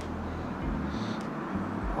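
Steady low outdoor background rumble with a faint hiss over it; no distinct event stands out.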